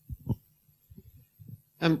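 A few soft, low thumps on the microphone during a pause in speech, the strongest about a quarter second in and smaller ones about a second later, typical of a handheld microphone being handled.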